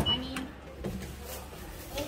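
Glass lift's call button pressed: a sharp click, with a brief high beep right after it, then a few light knocks.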